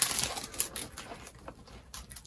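A crinkly candy-bar wrapper being torn open and unwrapped by hand: a loud tearing rustle right at the start, then lighter crackles and snaps as the wrapper is peeled back.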